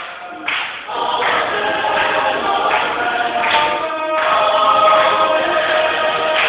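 High school madrigal choir singing a cappella: several voice parts holding sustained chords, with brief breaks between phrases.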